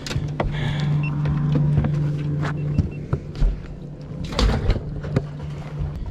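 A steady low mechanical hum from the boat for about the first three seconds, then fading, with several sharp knocks and clatter of handling on a bass boat's deck.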